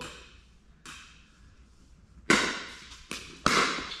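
Pickleball paddles striking the ball during a rally: four sharp pops, a lighter one about a second in, then three louder ones close together in the second half, each echoing in a large indoor hall.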